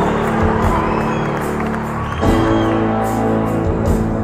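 Live band playing a song's opening on sustained held chords, changing chord about two seconds in, with the audience cheering and whistling over it.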